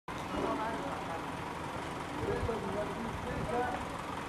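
Indistinct voices talking in the background over a steady outdoor rumble and hiss.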